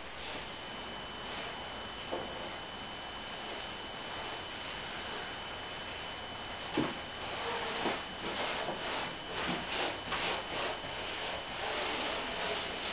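Gloved hands rubbing and smoothing fiberglass tape along an epoxy-coated seam of a wooden boat hull. After a steady low hiss, a soft knock comes about seven seconds in, then a run of short, irregular rubbing strokes.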